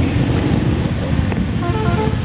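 Several motorcycle engines running as bikes ride past one after another, a dense steady engine noise. A brief higher-pitched stepped tone sounds near the end.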